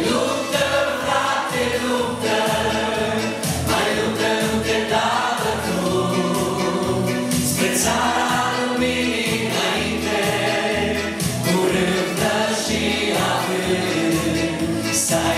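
A man and a woman singing a Christian song together into microphones, backed by an electronic keyboard with a steady beat.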